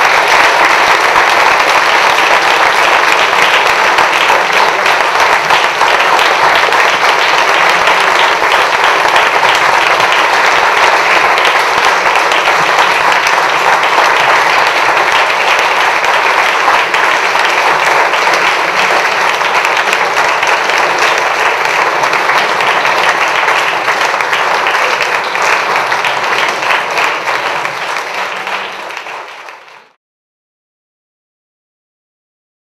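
A large audience applauding, many hands clapping in a dense, steady patter, fading out near the end.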